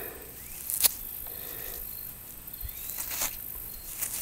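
Quiet handling of a freshly dug stone arrowhead, fingers rubbing loose dirt from it, with a sharp click about a second in and another near three seconds.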